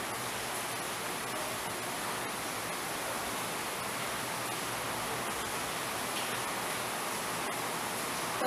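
Steady, even hiss of background noise with no speech.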